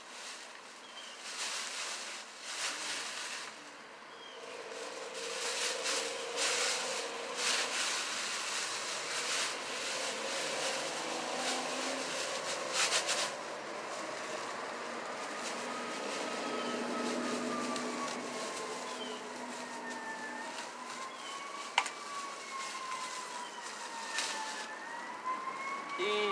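A distant emergency-vehicle siren wails slowly up and down through the second half. Before it, and under its start, a plastic shopping bag rustles and crinkles as it is handled, with a single sharp click near the end.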